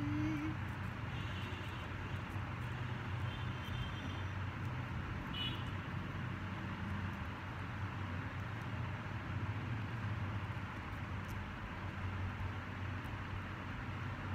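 Steady low mechanical hum and rumble, unchanging in level, with a few faint short high chirps in the first several seconds.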